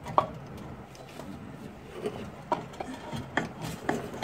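Scattered light clicks and knocks with some rubbing, from gloved hands working the loosened upper oil pan and the parts around it under the engine.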